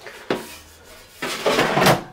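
Plastic basket drawer of a Tefal Easy Fry and Grill XXL air fryer being slid into its housing: a light click about a quarter of a second in, then a scraping slide in the second half that stops just before the end.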